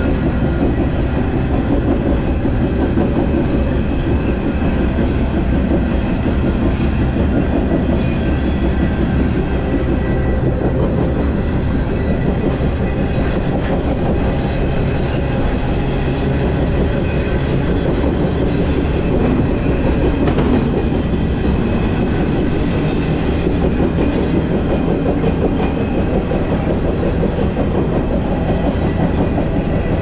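Freight train in motion, heard from aboard an intermodal well car: a steady, loud rumble and rattle of steel wheels running on rail, with occasional faint clicks.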